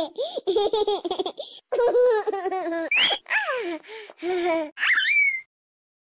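A baby laughing in a run of short, choppy high-pitched giggles, ending in a rising squeal and then stopping abruptly near the end.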